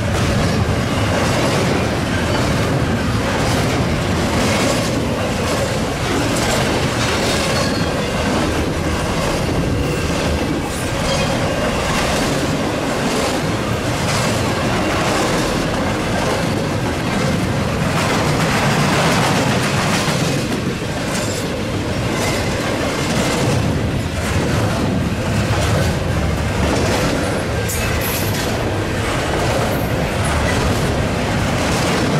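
Intermodal freight train of double-stack container cars and trailer flatcars passing close by: a steady rumble of steel wheels on rail with clicks recurring as the cars roll past.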